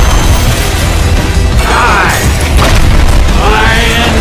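Loud first-person shooter combat audio: driving game music over repeated booms of gunfire and explosions.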